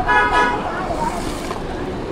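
A vehicle horn honks briefly near the start, one steady pitch held for about half a second, over street traffic noise.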